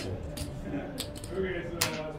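Casino chips clicking as a blackjack dealer pulls a stack from the chip tray and sets it down on the felt: a few sharp clacks, the loudest near the end.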